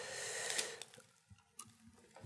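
Soft rustle of thin Bible pages being handled, stopping a little under a second in, after which it is almost silent.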